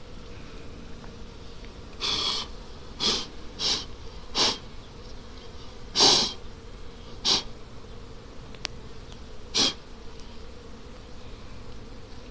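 A beekeeper blows short, sharp puffs of breath across a honeycomb frame to clear the honeybees off it, about seven puffs with the loudest near the middle. Underneath, honeybees buzz steadily around the open hive.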